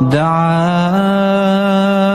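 Quranic recitation in the melodic tajwid style: one voice holds a single long, drawn-out vowel. The pitch glides up at the start and steps higher about a second in.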